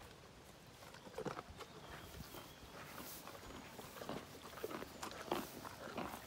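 Soft, irregular footsteps and rustling on grass, with scattered light clicks starting about a second in.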